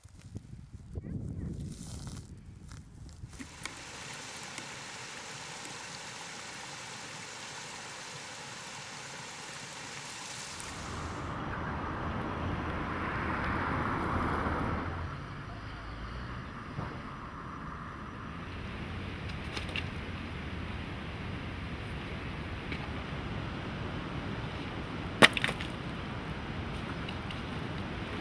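Outdoor background noise: a steady hiss that changes character at each shot change, louder for a few seconds around the middle, with a sharp click near the end.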